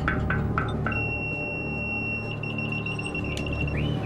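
A few sharp taps, then the deck-to-wheelhouse buzzer on a crab boat sounding a high, steady electronic tone for about three seconds that breaks into rapid pulses partway through. The buzzer is the crew's signal that they want to communicate with the wheelhouse.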